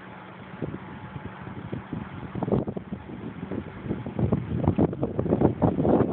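Wind buffeting the microphone in irregular low thumps, gusting harder in the second half.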